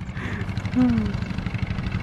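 Diesel farm tractor engine idling steadily, with an even, rapid pulse.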